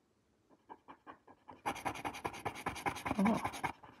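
A plastic scratcher tool scraping the coating off a scratch-off panel on a paper page in rapid back-and-forth strokes. It starts faint, then turns loud and steady from a little under halfway through until shortly before the end.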